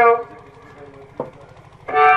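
Over the stage sound system, a performer's drawn-out voice ends just after the start, leaving a lull with a low steady hum and a single knock about a second in. Near the end, music starts with several held reed-like notes sounding together.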